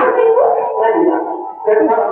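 A man's voice in a long, wordless, wailing cry, the pitch sliding up and holding, with a short break about a second and a half in. It is the cry of a man in anguish.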